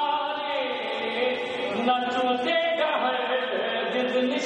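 A man's voice reciting a Urdu manqabat in a sung, chant-like style, drawing out long held notes that glide between pitches across several phrases.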